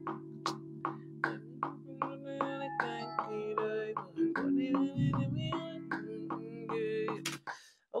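Rhodes electric piano patch from the Omnisphere software synth playing a melody over sustained chords at 154 BPM, with a steady click keeping time about two and a half times a second. The playback stops abruptly near the end.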